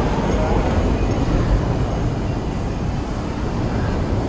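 Shopping-mall ambience: a steady low rumble with indistinct voices of people in the concourse.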